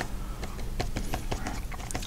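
Paintbrush dabbed again and again against paper while stippling foliage, making a quick, irregular run of small taps.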